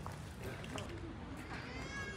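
Faint background chatter of people talking over a low steady rumble, with a short high-pitched call near the end.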